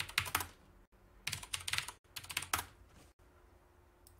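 Typing on a computer keyboard: three short bursts of quick keystrokes about a second apart.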